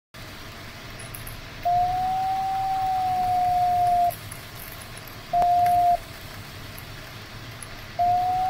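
Glider variometer audio: a steady electronic tone that rises slightly and then sags back in pitch over about two and a half seconds, followed by a short tone about a second later, over a steady hiss of air rushing past the cockpit.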